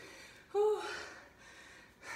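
A woman's short voiced gasp about half a second in, trailing off into a fading breath, as she exerts herself during a bodyweight exercise.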